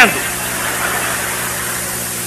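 Steady hiss with a low, even hum underneath, unchanging throughout: the background noise of a live sermon recording in a pause between the preacher's phrases.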